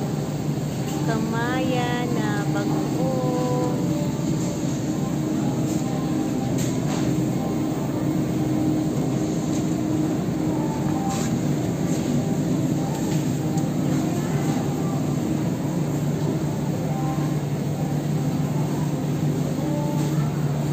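Supermarket ambience: a steady low hum with faint background voices, and a voice heard briefly in the first few seconds.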